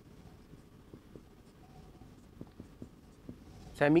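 Marker pen writing on a whiteboard: faint short strokes and ticks of the tip as band labels are written on a diagram. A man starts speaking just before the end.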